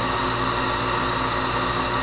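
Steady electrical hum under an even hiss, unchanging throughout.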